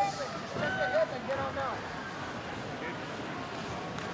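Indistinct voices in a large hall, clearest in the first two seconds, then only the steady background noise of the room.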